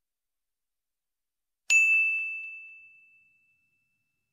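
A single bright bell ding, a notification-bell sound effect, struck about two seconds in and ringing away over about a second and a half.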